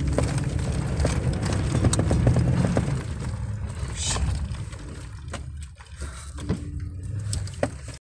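Inside a Toyota Tundra's cab driving slowly on a muddy dirt trail: low engine and tyre rumble with scattered clicks and knocks, the rumble dropping off after about three seconds.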